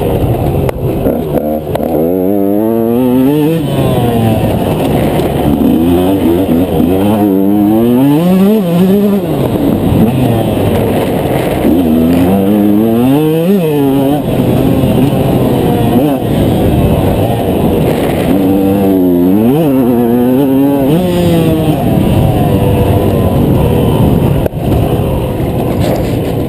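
KTM 125 EXC two-stroke single-cylinder engine ridden hard, revving up and dropping back again and again as the rider accelerates, shifts and brakes around a tight track; the pitch climbs and falls every few seconds.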